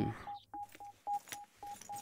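A quick run of short electronic beeps, all at the same pitch, about four a second.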